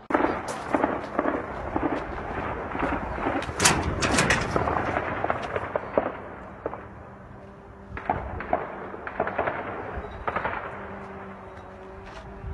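Gunfire: many sharp shots in quick, overlapping succession that start suddenly and run thick for about six seconds, then thin to scattered shots between about eight and ten seconds in.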